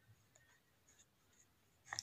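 Faint scratching of a pen writing on paper, with a sharper click near the end.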